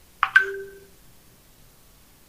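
A short electronic notification chime about a quarter second in: a quick rising blip, then a click and a two-note tone that holds for about half a second.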